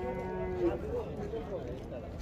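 A cow lowing once, a short, steady, even-pitched call in the first second, against background voices.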